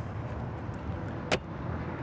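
A single sharp click a little past halfway as the small plastic exterior access door of the cassette toilet compartment on the side of a camper van is pushed shut and latches, over a steady low background rumble.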